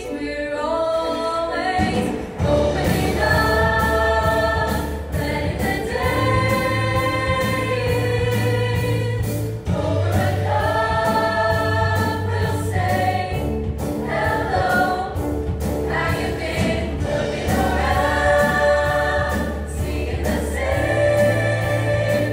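High school choir singing an upbeat song with piano and guitar accompaniment. A low bass part and a steady beat come in about two seconds in.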